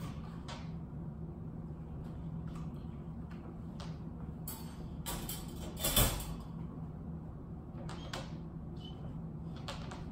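Wire dog crate rattling and clanking as its metal door is handled, with a sharp clatter about six seconds in and smaller clicks before and after, over a steady low hum.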